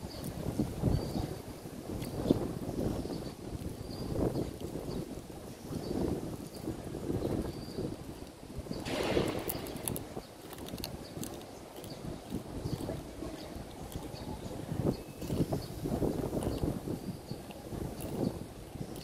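Wind buffeting the microphone in uneven low gusts, with a stronger rushing gust about nine seconds in.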